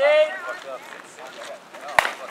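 Softball bat striking a pitched ball once, a single sharp crack near the end, for a base hit. Voices shout and call out just before it.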